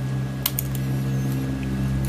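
Steady low electrical hum, with a sharp click about half a second in and a fainter one just after as an oscilloscope probe and test clip are handled.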